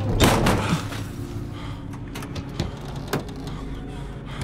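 A loud bang about a quarter of a second in, then a few short knocks over a steady low rumble: a film's action sound effects.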